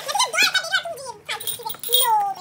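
A child's high-pitched voice, talking and giggling in quick, sliding bursts.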